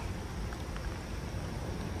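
Rain falling on a river's surface, a steady even hiss with a few faint ticks of drops.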